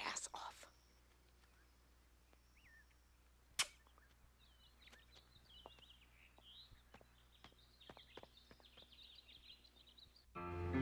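Near silence with faint high chirping calls in the background and a single sharp click about three and a half seconds in.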